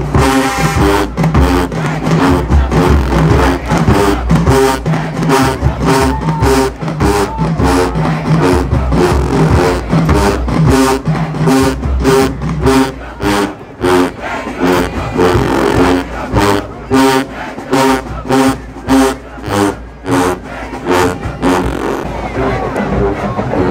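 Marching band with brass and sousaphones playing a punchy, repeating riff of short horn chords over a steady drum beat of about two hits a second.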